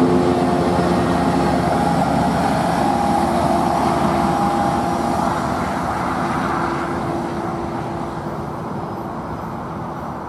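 Tri-Rail diesel-hauled commuter train, bilevel coaches and locomotive, running past and away along the track: a steady rumble and rail noise with a low hum that slowly fades as the train recedes.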